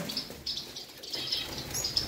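Small aviary finches chirping: short, high calls in a few scattered bursts.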